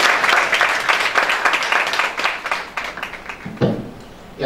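Audience applauding, a dense patter of many hands clapping that thins and dies away about three seconds in.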